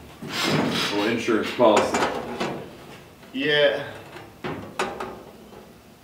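A man's voice talking indistinctly, then a couple of light knocks and rubbing from a hand-formed sheet-steel panel being handled and test-fitted inside a car body.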